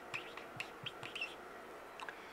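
Dry-erase marker writing on a whiteboard: a run of short, faint squeaks and ticks as the marker strokes across the board.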